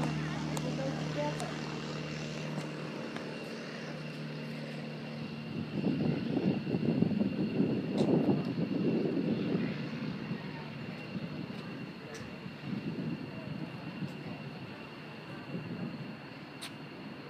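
Aircraft engine noise from a small airplane on the runway, a steady hum under a high whine. About six seconds in, the low engine tone gives way to a rougher swell of noise that peaks and then slowly fades.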